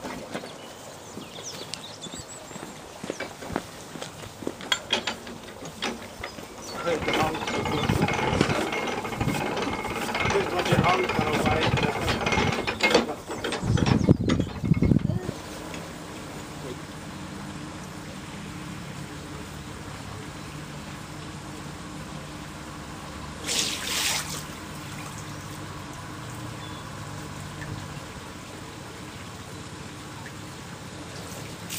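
Lock paddle gear being worked, its ratchet and pawl clicking, followed by a loud stretch of rushing noise in the middle. After that comes a steady low hum, typical of a narrowboat engine running, with a brief hiss about two thirds of the way through.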